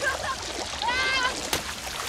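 River water splashing and rushing around two men standing in it, with one man's voice laughing out once about halfway through.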